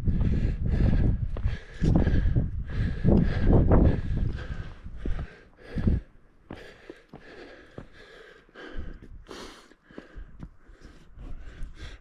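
Gusts of wind buffeting the camera microphone on an exposed rocky mountain ridge, heavy and uneven for the first six seconds, then dropping to softer scattered gusts, with the walker's breathing.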